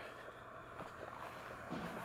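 Quiet outdoor background noise with a faint steady low hum and no distinct event.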